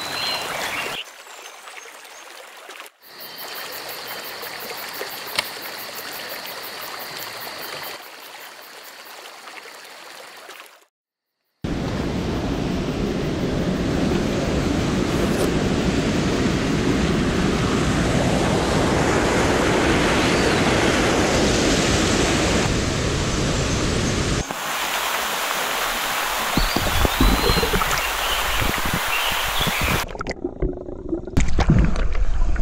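Rushing water of a rocky stream running over stones and small cascades, a steady rush. It is quieter for the first eleven seconds, drops out briefly, then comes back much louder and fuller from about twelve seconds.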